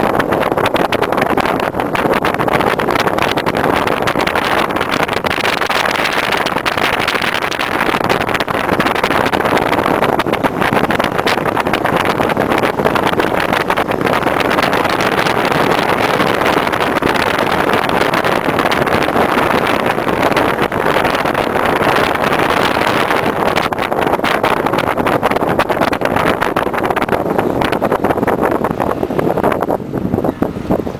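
Car interior on the move: a steady rush of road and wind noise with the engine running underneath, swelling slightly twice.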